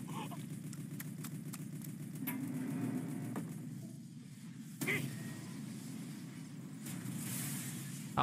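Faint soundtrack of an anime episode playing low: a steady low background with scattered soft clicks, a brief louder sound about five seconds in, and a short hiss near the end.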